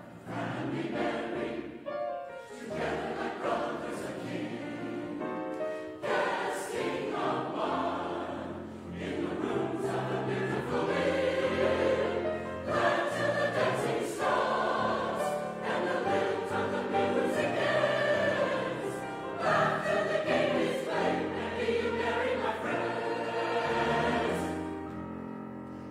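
Mixed SATB choir singing a gospel-influenced choral setting with piano accompaniment, growing louder about ten seconds in.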